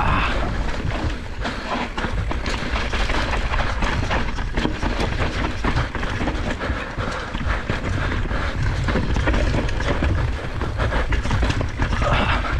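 Mountain bike rolling fast over dirt and gravel: tyres rumbling on the ground with a continuous clatter and rattle of the bike over bumps, and wind buffeting the microphone.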